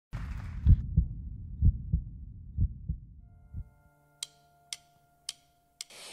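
Heartbeat sound effect: low double thuds about once a second, fading out over the first four seconds. A steady held note then fades in, with a few sharp clicks about half a second apart, as the musical intro starts.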